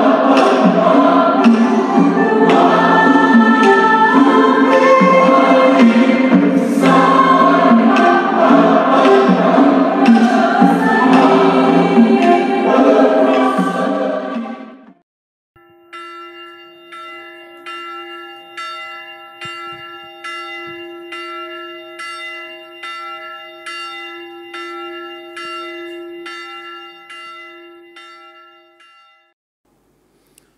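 A choir singing a hymn, cutting off about halfway through. After a short gap comes bell-like chiming music: evenly repeated ringing strikes, about one and a half a second, over a held low note, fading away near the end.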